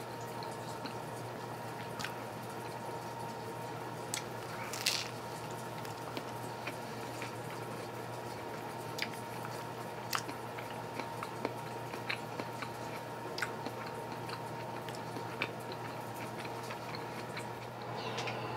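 A person chewing a mouthful of burger: scattered soft, wet mouth clicks and smacks, with a louder one about five seconds in, over a steady low background hum.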